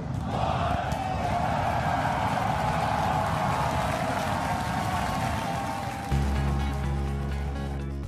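Liftoff roar of SpaceX Starship's Super Heavy booster, its 33 Raptor engines at full thrust, heard as a dense, steady rumbling noise. About six seconds in, it gives way to background music with sustained low chords.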